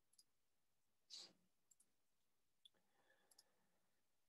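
Near silence with a few faint computer mouse clicks, the loudest about a second in.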